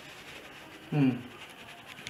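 A person's short vocal sound, falling in pitch, about a second in, over faint room tone.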